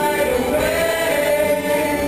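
Mixed-voice show choir of boys and girls singing together.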